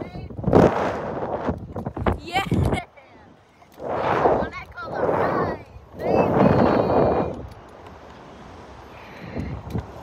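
Riders screaming and shouting aboard a Slingshot ride in flight, in about five loud outbursts over the first seven seconds, over wind rushing across the onboard microphone. The screams die away for the last couple of seconds, leaving the wind.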